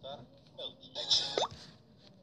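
A person's voice: a few short sounds with quick upward pitch glides, the last and loudest about one and a half seconds in.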